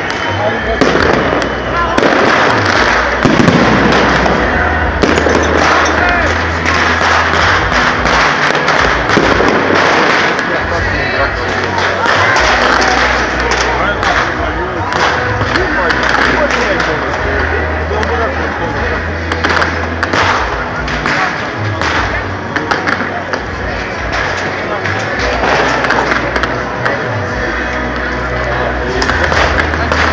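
Fireworks display going off in quick succession: a dense, continuous run of bangs and crackles as rockets and sparks shoot up.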